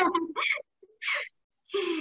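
Short snatches of a woman's speech heard over a video call, broken by brief silent gaps, with a short sharp sound about a second in.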